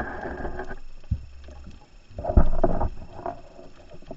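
Scuba diver breathing through a regulator underwater: a hissing inhale at the start, then a loud, rumbling bubble exhale a little past the halfway mark.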